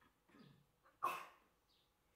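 A dog barks once, faintly, about a second in, with a softer, lower sound just before it.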